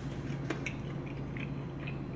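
Faint chewing with a few small clicks, one sharper click about half a second in, over a steady low hum of room tone.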